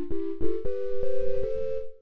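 A microwave timer-beep sample played as pitched notes in a software sampler: two-note chords step upward in pitch several times, and each new note starts with a small click.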